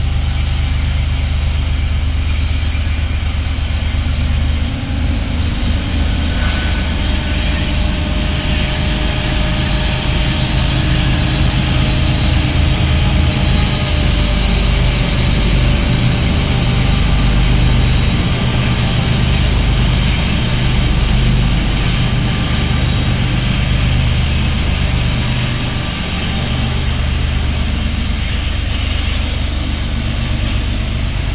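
A lash-up of Union Pacific diesel-electric freight locomotives (GE and EMD units) passing close by with a train, their engines giving a steady deep drone that swells a little as the units go by.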